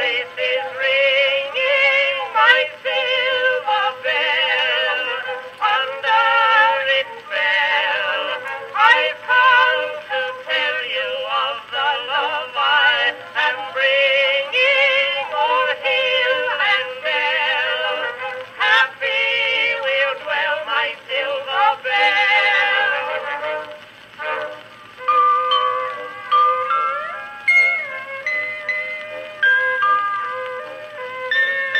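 Edison Blue Amberol wax cylinder played on an Edison Amberola 30 phonograph: a soprano and tenor duet with band accompaniment, its sound thin and with almost no bass, as acoustic recordings of the time are. About 25 s in the voices stop and the instruments carry on alone.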